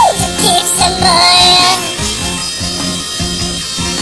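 Pop song sung in sped-up, high-pitched chipmunk-style vocals over a steady beat. The voice sings a short phrase with a swooping note in the first two seconds, then the backing carries on without it.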